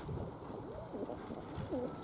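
Domestic pigeons cooing quietly, several soft rising-and-falling calls.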